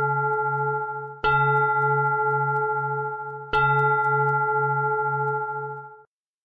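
A meditation bell struck twice, about a second in and again about three and a half seconds in. Each strike rings on with several steady tones and a low tone that wobbles about twice a second. The ringing from a strike just before carries in at the start, and the sound cuts off abruptly at the end.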